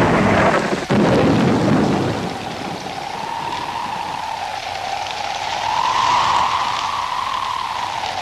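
Rain-and-thunder storm sound: a heavy rumble through the first two seconds, then a steady rushing hiss of rain with a pitch that slowly rises and falls.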